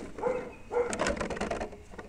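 Lexan body and chassis of an RC rock racer rattling and clicking as the truck is shaken by hand, with the clicks heaviest about a second in; the body is a little rattly, but the wheels are tight.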